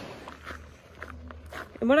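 A few soft footsteps on a dirt trail, faint against a low hum. A woman's voice begins near the end.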